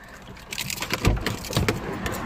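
Clicks and two dull thumps, about a second in and half a second later: a car door being opened and the phone being knocked about as someone climbs out of the driver's seat.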